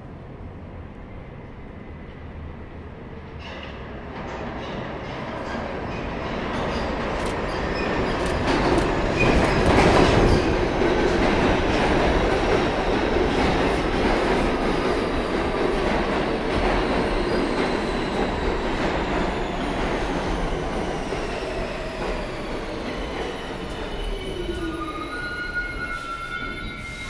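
R46 subway train pulling into an underground station: the rumble and rattle of its wheels build from a few seconds in and are loudest about ten seconds in, with the wheels squealing on the rail. It then slows with a falling whine as it comes to a stop, and a few short high tones sound near the end.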